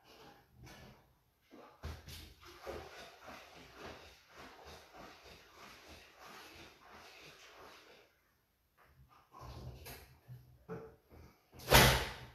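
About five gallons of liquid sloshing inside a stoppered glass carboy as it is rocked and tilted, with a few knocks. Near the end there is a loud thump as the full carboy is set down on the table.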